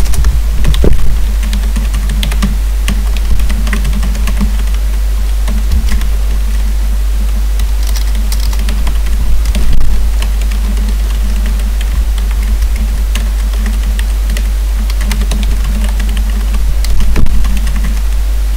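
Computer keyboard being typed on in quick, irregular clicks, over a steady low hum.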